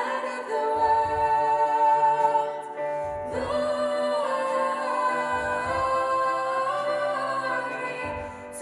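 Four women's voices singing in close harmony into microphones, with long held notes and a short break between phrases about three seconds in. A low note sounds underneath about every two seconds.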